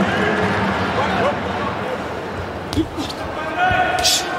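Boxing-arena hall noise: a murmur of spectator voices with scattered short shouts, and a couple of sharp thuds from the ring about three-quarters of the way through.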